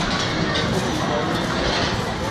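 Crowd hubbub: many people talking at once, no single voice standing out, a steady background babble.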